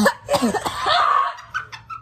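A girl laughing hard and coughing in loud, breathy bursts that die down about a second and a half in.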